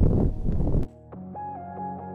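Loud wind noise buffeting the microphone, cut off abruptly a little under a second in. Calm ambient music with sustained notes follows.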